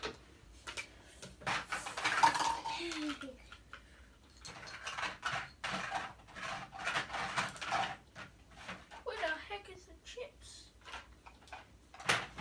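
Plastic toy dishes, cups and utensils clattering and clicking as they are handled, in short irregular bursts, with brief murmured child voices.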